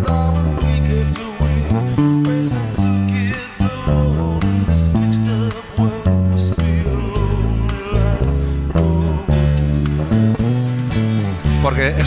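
Electric bass guitar playing an embellished line over a pop-rock song with singing: it hits the root note at the start of each bar and adds passing notes in between.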